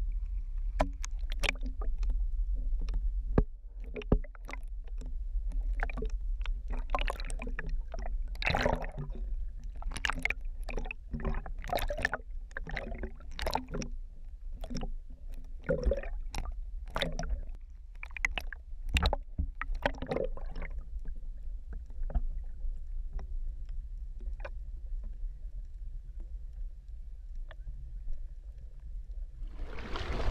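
Sea water sloshing and splashing over a GoPro held at and just under the surface, with a steady low rumble and many sharp clicks and splashes through the first two-thirds, then a calmer stretch.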